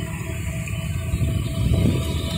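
Shrimp pond aeration running: a steady low rumble with a faint steady hum, as air bubbles up through the pond water.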